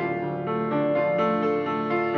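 Blüthner grand piano played solo: a flowing run of sustained notes and chords, new notes sounding every fraction of a second.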